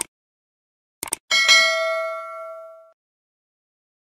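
Subscribe-button animation sound effect: a short click at the start, a quick double click about a second in, then a bell ding that rings out and fades over about a second and a half.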